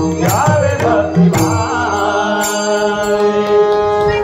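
The close of a Marathi abhang bhajan: a male voice sings over a harmonium, with a few pakhawaj drum strokes in the first second and a half. The harmonium then holds one long final note that fades near the end.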